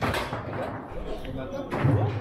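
Two sharp knocks from a foosball table, one at the start and a louder one near the end, over background chatter in a hall.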